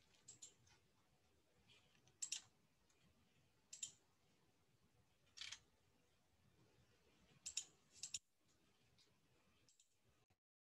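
Near silence with about ten faint, short clicks scattered through it, some in quick pairs, typical of clicking at a computer.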